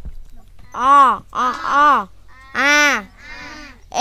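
Young voices chanting long drawn-out vowel sounds in a recitation drill: four syllables, each rising and then falling in pitch, with short pauses between.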